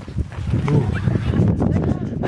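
A flock of sheep and young lambs calling with short bleats over a dense low rumble of trampling and wind on a moving microphone.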